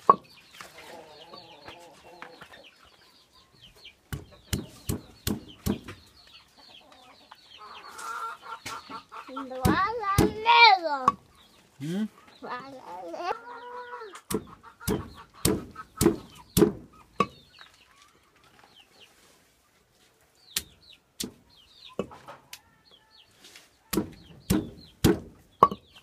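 Green jocotes being pounded with a stone hand pestle on a stone grinding slab: runs of sharp knocks, in places about two a second, with pauses between the runs. A loud cry that rises and falls in pitch cuts in about ten seconds in.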